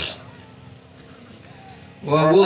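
A pause in a man's amplified Quran recitation: a brief breath-like hiss at the very start, then only faint steady background noise until the voice returns.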